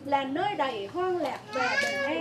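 A woman's voice reciting a Vietnamese Catholic prayer aloud from a booklet: speech only.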